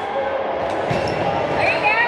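A volleyball is struck hard about a second in, a sharp smack, followed near the end by athletic shoes squeaking on the court floor as players move, over steady chatter in a gym.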